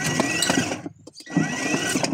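12 V ride-on toy tractor's electric drive motor and gearbox whirring in two short runs of about a second each, a whine rising as it spins up, as the two foot-pedal switch wires are touched together. The motor runs with the pedal bypassed, showing the fault lies in the foot-pedal switch.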